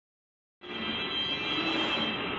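Flatbed UV printer running: a steady mechanical hum with a faint high whine, setting in about half a second in.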